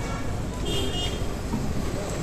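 Road traffic running steadily on a busy street, with a short high-pitched vehicle horn toot about two-thirds of a second in.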